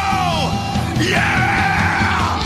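Loud heavy rock music. A held high note dives down in pitch, then a high wailing line rises about a second in, over distorted guitars, bass and drums.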